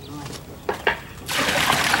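Water poured from a bucket into a tub of sand and rendering cement, a steady splashing pour that starts a little past halfway. It is the water being added to the dry mix for rendering.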